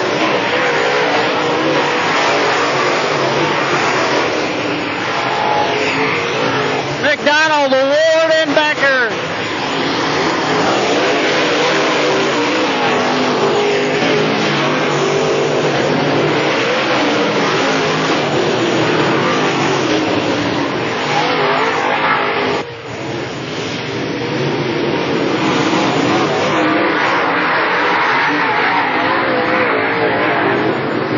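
A pack of dirt late model race cars running at racing speed, their V8 engines making a steady, dense din, with a brief wavering pitched sound riding over it about eight seconds in.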